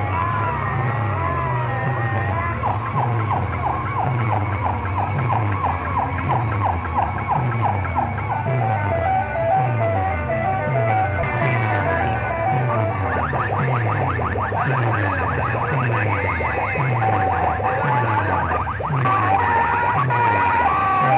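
Loud DJ dance music blasted from a stacked horn-and-box-speaker sound system: a heavy bass beat of about two hits a second, each sliding down in pitch, under siren-like electronic sweeps and rapid repeating high tones.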